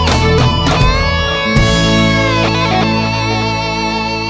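Guitar-led rock band music: a few accented hits by the whole band in the first second and a half, then a final chord held and ringing out, slowly fading.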